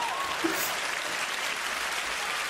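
Theatre audience applauding, steady and even.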